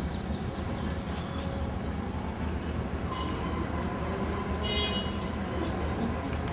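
Steady low rumble, with a brief high-pitched tone about five seconds in.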